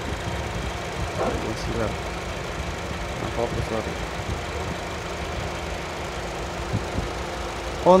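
Honda Freed's 1.5-litre four-cylinder petrol engine idling with a steady, even hum. Faint voices in the background.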